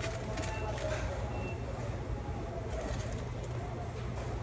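Restaurant room tone: a steady low hum with faint background voices, and two short high beeps in the first second and a half.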